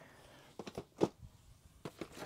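Cardboard model-kit boxes being handled and shuffled in a shipping carton: a few short, light knocks, the loudest about halfway through.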